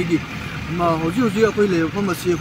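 A man speaking, with a short pause about a quarter of a second in.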